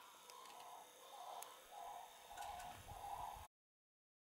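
A bird calling faintly in a string of low, repeated notes, about two a second. The sound cuts off abruptly about three and a half seconds in.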